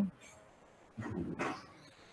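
A man coughs once, about a second in.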